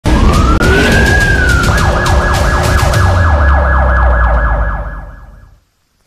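Breaking-news intro sting built on a siren sound effect. The siren glides up in pitch, then switches to a fast yelping wail over a deep drone and a steady beat. It fades out about a second before the end.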